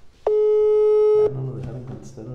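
Telephone call-progress tone: a single steady beep about a second long, followed by a low steady hum.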